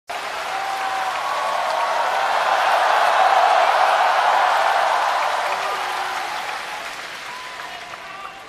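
A large audience of thousands applauding to welcome performers onto the stage, with a few voices shouting from the crowd. The applause starts at once, swells to a peak about three seconds in, then fades toward the end.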